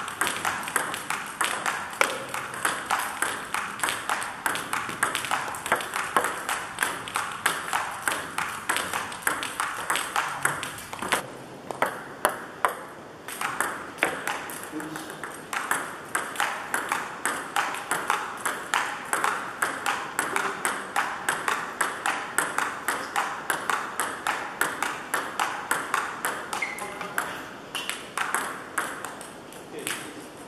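Table tennis ball hit back and forth between paddles and bouncing on the table in a long rally: a steady run of sharp clicks, about two to three a second, with a short break near the middle.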